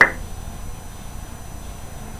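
A single sharp click as the lip pencil is handled, then only low, steady room noise.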